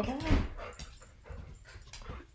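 A pet dog coming over, heard as faint scattered sounds and a few light clicks; it does not bark.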